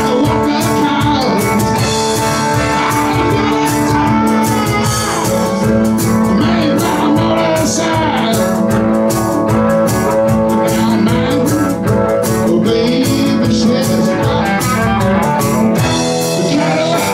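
Live blues band playing: electric and hollow-body guitars over drums, with amplified harmonica and a man singing. Several long notes are held over a steady beat.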